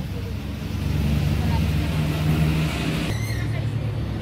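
A motor vehicle's engine running close by: a steady low rumble that grows louder about a second in and eases back a little near the end.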